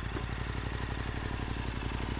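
Yamaha Ténéré 700's parallel-twin engine idling steadily, with an even run of firing pulses.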